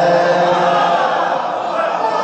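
A man's voice chanting a sung, drawn-out recitation into a microphone, the pitch held and wavering.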